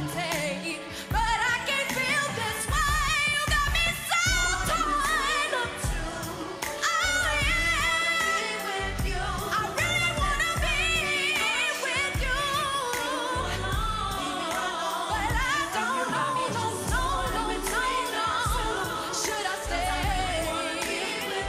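A woman singing a pop song live into a microphone, her voice wavering through long sung runs, over a band with a steady bass and drum beat.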